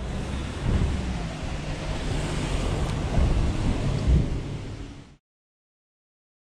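Wind buffeting an action camera's microphone outdoors: a steady rushing noise with an uneven low rumble. It cuts off to silence about five seconds in.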